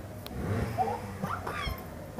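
A young child's short high-pitched vocal squeals, a few brief rising and falling calls, with a low thump near the end.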